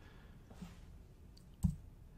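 A single sharp click about three-quarters of the way through, against low room tone.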